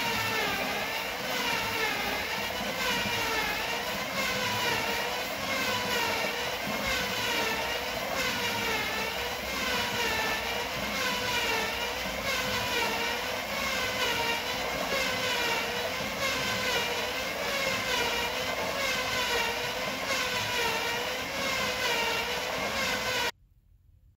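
Star roller's electric motor and turning plastic drum running steadily with a whine that wavers up and down in pitch in a regular rhythm, rice hulls tumbling inside. The sound cuts off abruptly near the end.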